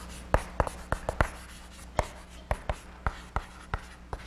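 Chalk writing on a blackboard: a quick, irregular series of sharp taps and clicks as the chalk strikes and lifts off the board, about a dozen in all.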